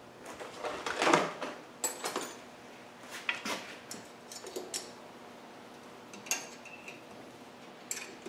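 A hand tool clinking and scraping against a Land Rover's rusty rear drum brake as the brake shoe adjuster on the backplate is worked: scattered metallic clicks, with a louder scrape about a second in and a brief ringing clink around six seconds in.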